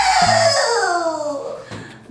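A girl's long, drawn-out squeal, sliding down in pitch and fading away over nearly two seconds.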